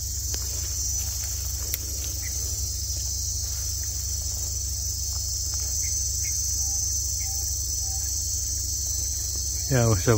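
Steady, unbroken high-pitched chorus of insects in a sunny orchard, with a low steady hum beneath it. A man's voice starts right at the end.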